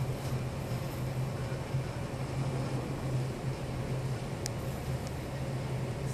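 Steady low hum of a ship's machinery and ventilation heard inside the wheelhouse, with one brief sharp tick about four and a half seconds in.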